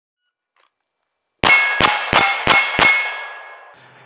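Five rapid pistol shots about a third of a second apart, each with a metallic ring from hits on steel targets; the ringing fades out over about a second after the last shot.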